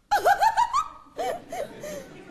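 A woman laughing heartily: a quick run of ha-ha laughs climbing in pitch, then a few more laughs after a short pause about a second in.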